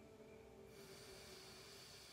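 Faint, slow breath drawn through one nostril in alternate nostril breathing: a soft airy hiss that begins about two-thirds of a second in.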